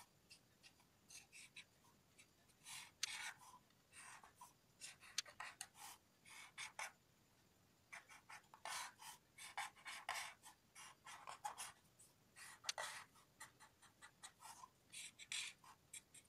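Black marker pen drawing lines on paper, a faint scratching in many short, irregular strokes.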